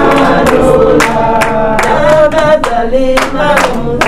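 A group of voices singing together, with hand claps keeping a steady beat about two to three times a second.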